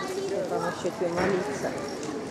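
Voices of several people talking, overlapping and not close to the microphone.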